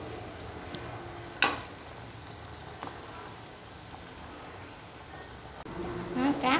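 Stainless-steel pot of broth bubbling steadily on the boil while a metal ladle lifts pieces of fish out, with one sharp clink of metal about a second and a half in and a couple of lighter taps.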